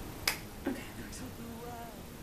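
Cap of a glass perfume bottle being pried off: a sharp click, then a fainter one about half a second later.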